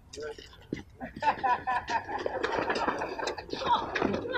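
Indistinct voices of several people talking over one another, starting about a second in, with a few short knocks before that.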